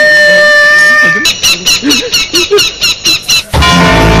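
Eerie horror-film soundtrack: a held chord breaks off about a second in into a rapid run of short squeaky pulses, about five a second, and near the end a loud low drone comes in.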